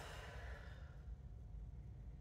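A woman's long, soft exhaled sigh that fades out about a second in, over a faint low room hum.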